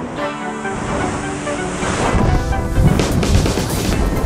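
Background music fading out in the first two seconds as loud wind rush from skydiving freefall buffets the camera microphone and takes over.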